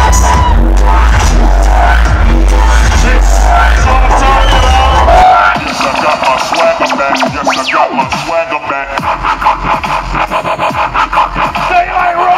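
Loud dubstep track played over a party sound system. Its heavy bass cuts out about five seconds in, leaving a quicker, choppier beat with sweeping sounds.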